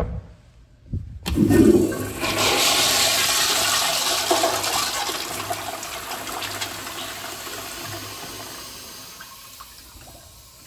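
Commercial toilet with a chrome flushometer valve flushing: a click, then about a second in a loud rush of water that slowly fades over the following seconds.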